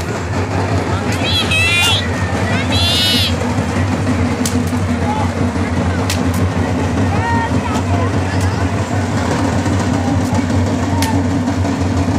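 Dense crowd noise of a large street procession: many voices talking and calling over a steady low rumble. Two brief shrill warbling sounds cut through about one and three seconds in, and a few sharp cracks are scattered through the rest.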